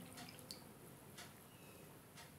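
Near silence with a few faint drips as the last trickle of water falls into a glass of water, the clearest about half a second in and another a little over a second in.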